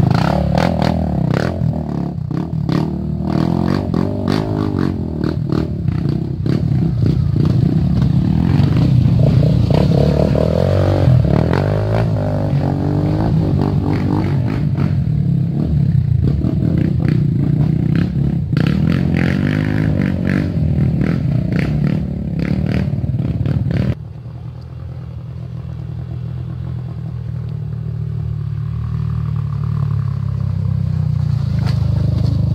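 Dirt bike engine running under throttle through deep mud, with scraping and clattering from the bike. About two-thirds of the way in the sound cuts abruptly to a quieter engine running steadily and growing louder toward the end.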